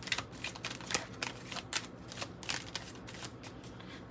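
A deck of oracle cards being shuffled by hand: an irregular run of short, light clicks as the cards slide over one another.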